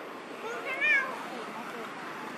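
An injured baby macaque crying: one faint, wavering high-pitched cry, rising and falling, about half a second in.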